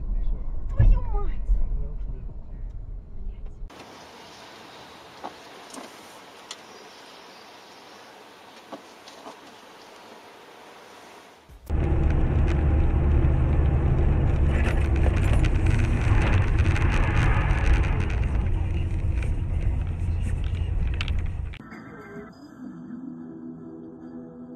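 Road and engine noise inside cars recorded by dashcams, changing abruptly at each cut: a loud low rumble, then a few seconds in a quieter hiss with faint clicks, then about halfway a loud rumble again. Music with held notes comes in near the end.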